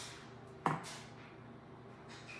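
Raw sugar sprinkled by hand onto muffin batter in metal tins, faint, with one sharp knock about two-thirds of a second in.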